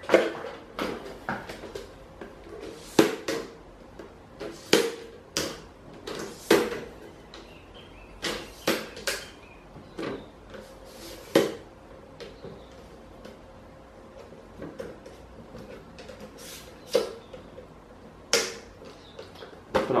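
Irregular clicks and knocks of a photo softbox light and its stand being adjusted by hand, about a dozen sharp handling sounds spread out with quieter gaps between them.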